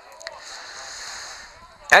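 Faint open-air ambience of a football ground, an even hiss, with a single short click about a quarter second in.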